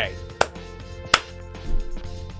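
Two slow, separate hand claps, about half a second and a little over a second in, over steady background music.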